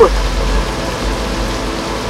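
Steady heavy rain falling, an even hiss.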